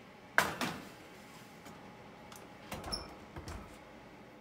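A metal baking pan clanks sharply against the oven rack about half a second in, the loudest sound, with a smaller knock just after. Near the end come duller knocks and a low thud as the rack goes in and the oven door is shut.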